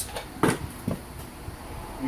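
Two short knocks of handling noise: a sharp one about half a second in and a duller, fainter one about half a second later.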